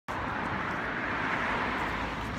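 Steady urban street noise: a continuous, even rush of traffic with no single sound standing out.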